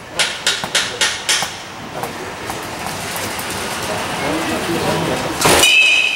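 A handful of sharp clicks, then a rumbling mechanical noise that builds over a few seconds. Near the end comes one loud metal baseball bat striking a fast pitched ball, with a short ringing ping.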